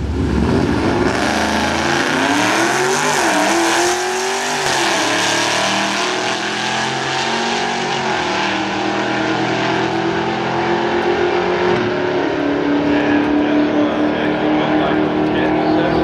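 Dodge Charger 392's 6.4-litre HEMI V8 launching at full throttle down a drag strip, its note climbing in pitch and dropping back at each upshift, then running on at a steadier pitch.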